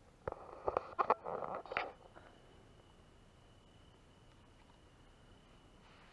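Rustling and several sharp knocks close to the microphone for under two seconds, the sound of the camera or nearby gear being handled. After that, a faint thin steady high tone continues.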